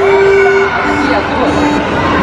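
Giant electronic floor piano sounding single held notes as feet press its keys: one note for about half a second, then a few shorter, lower notes, over voices.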